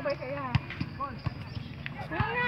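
Basketballs bouncing on an outdoor hard court: a few short, sharp thuds, the loudest about half a second in, with voices in the background.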